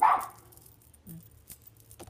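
A dog barks once, a single short loud bark right at the start that dies away quickly.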